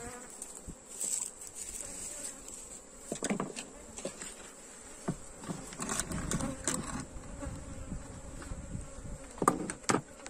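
Honeybees buzzing steadily around an open hive, with a few knocks and a stretch of scraping handling noise in the second half as the sheet-metal-covered hive lid is set down onto the frames.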